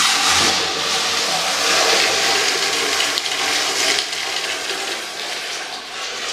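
Urinal's wall-mounted flush valve flushing: a sudden loud rush of water that starts abruptly and runs on, easing a little after about four seconds.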